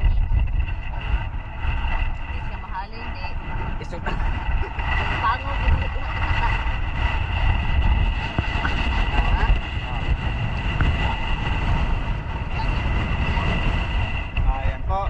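Wind rumbling on the microphone and water sloshing around feet wading through shallow water, with a faint steady high whine in the background.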